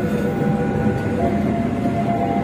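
A rake of passenger coaches rolling past at close range while being shunted, a steady rumble of wheels on the rails with faint steady high tones over it.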